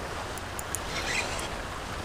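Small choppy waves lapping and washing steadily around a person wading waist deep, with a low wind rumble on the microphone.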